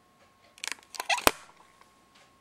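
Clicks and rattling from hands on a video camera, ending in one sharp loud click, as the recording is stopped.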